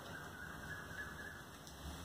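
Quiet room tone with a faint, thin, steady high tone lasting about a second in the first half.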